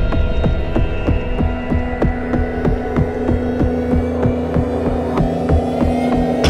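Dramatic TV-serial background score: a sustained low drone under a regular throbbing pulse, about four beats a second, like a quickened heartbeat.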